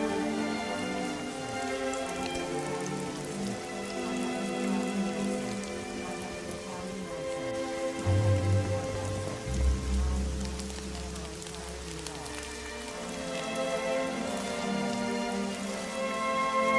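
Recorded rain falling steadily, layered over soft ambient music with long held chords. A deep low rumble comes in about eight seconds in and lasts several seconds.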